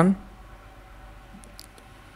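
Quiet room tone with a few faint, light clicks about a second and a half in.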